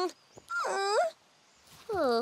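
Wordless vocal sounds from a cartoon child character: a whiny call about half a second in that rises at its end, then a second, falling call near the end.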